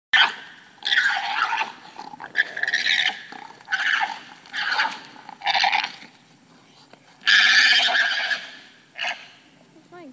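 Alpacas fighting, giving shrill screaming calls in about eight bursts, the longest lasting about a second roughly seven seconds in.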